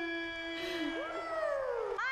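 A man's voice drawing out a name in a long sung announcer's note, with higher voices coming in about a second in and gliding slowly down over it like whoops.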